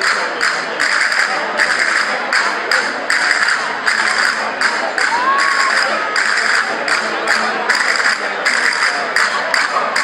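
Folk-group percussion in a street procession, beating an even rhythm of about three sharp strokes a second. Crowd chatter runs underneath.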